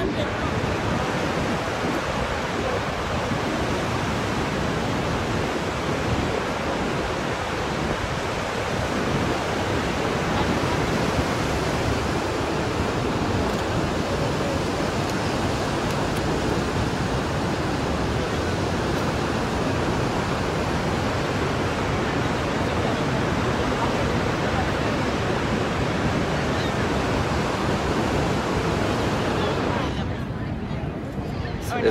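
Niagara Falls' falling water making a steady, unbroken rush at an even level throughout.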